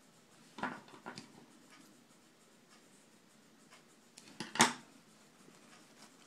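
Wired fabric ribbon rustling and crinkling as the loops of a pom pom bow are handled and fluffed out, with a few short scuffs about half a second and a second in and a sharp tap about four and a half seconds in.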